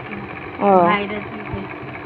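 A woman's voice making one short utterance about half a second in, over a steady low hum, with a soft low thump about a second and a half in.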